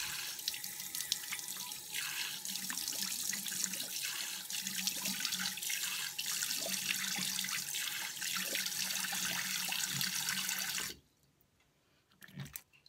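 A tap runs steadily into a sink while hands scoop and splash water onto a face to rinse off soap lather. The tap is shut off suddenly about eleven seconds in.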